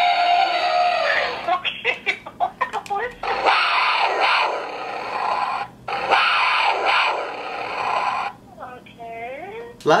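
A man's voice through a toy voice changer, turned into a harsh, garbled buzz that the speech recogniser cannot make out, in three stretches. Near the end a quieter, clearer voice with gliding pitch follows.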